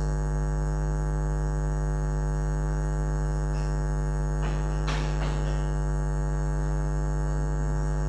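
Steady electrical mains hum, a low buzz with many overtones, running at an even level under the recording; a brief faint rustle about five seconds in.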